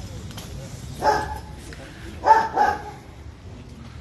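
A dog barking outdoors: one short bark about a second in, then two quick barks close together a little later, over a steady low background rumble.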